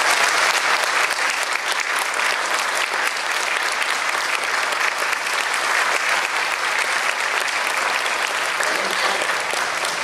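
Audience applauding, steady clapping throughout.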